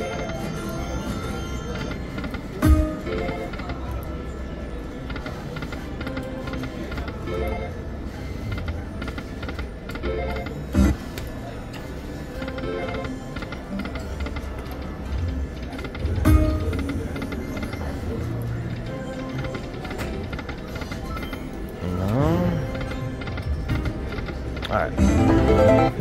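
Panda Magic slot machine playing its game music and chimes through repeated reel spins, with a few sharp knocks along the way. Sliding tones come in around three-quarters of the way through and again near the end, as a small win pays.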